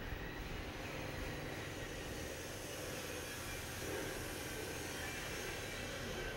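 Faint, steady hiss and low rumble of background noise, with no music or speech.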